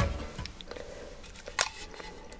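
The end of the music fades out at the start; then a few light clicks and taps of an aluminium soda can being handled close to the microphone, the loudest a single sharp click about one and a half seconds in.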